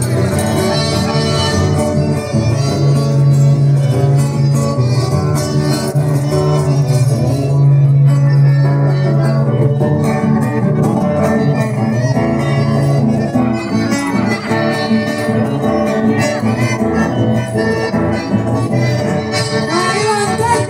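Live, amplified accordion and acoustic guitars playing an instrumental passage of Argentine folk dance music.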